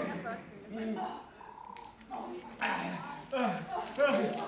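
A man's wordless vocal noises: spluttering through a mouthful of water and excited cries that swoop up and down in pitch, in short bursts.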